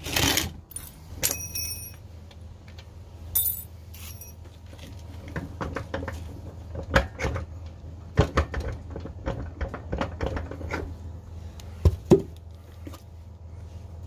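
A ride-on mower's rear wheel being worked off its transaxle axle by hand: scattered metallic clinks, rattles and knocks, bunched together past the middle. A brief rustle of clothing brushing close over the microphone at the start.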